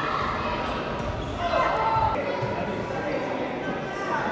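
Futsal ball thudding on a hard indoor court, in a large echoing sports hall with voices calling out; the loudest is a shout about halfway through.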